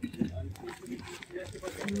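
A woman's drawn-out admiring coo, 'oo-oo', a held vocal tone near the end, with other voices murmuring around it.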